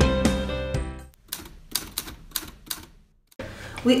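Background music fading out, then a quick run of about eight sharp clicks lasting under two seconds, followed by a brief hush.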